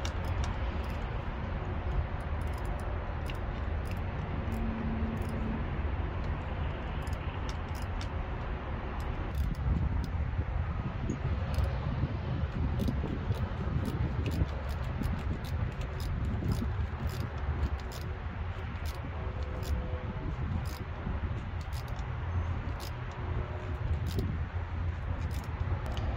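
Small scattered clicks and clinks of metal parts and tools being handled while the poppet valve assembly is fitted back onto a Mercury two-stroke outboard, over a steady low rumble; the engine is not running.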